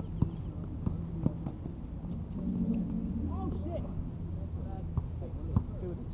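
A basketball bouncing on an outdoor hard court: a few sharp bounces in the first second and a half and another near the end, with players' voices in the background.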